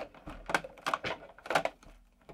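Cardboard advent calendar box being handled as a door is opened: a series of light clicks and knocks, about six in two seconds.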